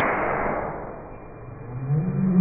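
Muffled whoosh of flames flaring up in a burn container, dying away over about a second and then swelling again with a low hum near the end; the sound is dull, as if its treble had been cut off.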